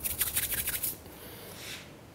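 Glue-smeared hands rubbing briskly together: a fast run of short, scratchy rubbing strokes for about a second, then one fainter rub.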